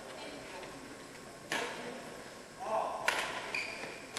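Badminton rackets striking the shuttlecock twice, sharp cracks about a second and a half apart. Short high-pitched squeals come between and after the hits.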